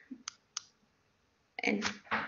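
Two short clicks a quarter second apart, a mouse or keyboard advancing the presentation slide, followed by a woman starting to speak near the end.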